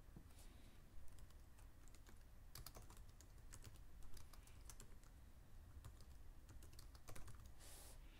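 Faint typing on a computer keyboard: irregular clusters of keystrokes entering a line of text, with a brief soft hiss near the end.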